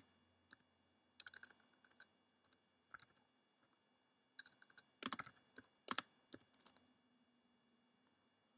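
Faint typing on a computer keyboard: short runs of key clicks with pauses between them, the loudest keystrokes about five and six seconds in.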